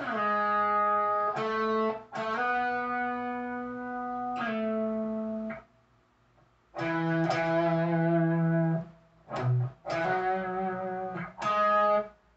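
Schecter Diamond Series electric guitar playing an unaccompanied phrase of ringing chords and held notes, stopping for about a second halfway through, then a second phrase with a couple of short breaks near the end.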